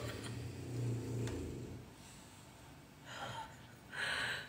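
A woman's quiet, muffled laughter behind her hand, then a short gasping breath about three seconds in.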